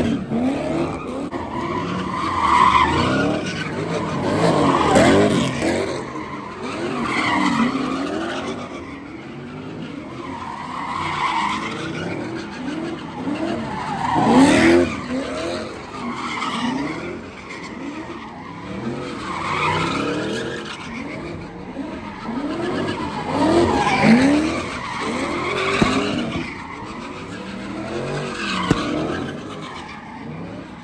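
Cars doing donuts: engines revving up and down over and over, with tyres skidding and screeching as the cars spin.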